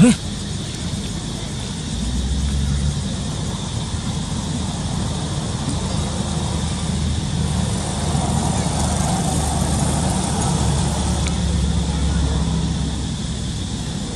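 Low engine rumble of road vehicles passing, swelling about two seconds in and again for several seconds from around eight seconds, with a sharp click right at the start.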